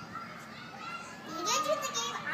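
A young child's voice, quiet, vocalizing from a little past halfway through.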